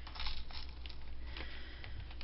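Light clicks and rustling of wooden-mounted rubber stamps being shifted and picked out of a clear plastic case, over a steady low hum.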